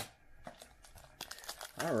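Foil wrapper of an Upper Deck hockey card pack crinkling as it is torn open by hand, in quick small crackles that grow busier toward the end.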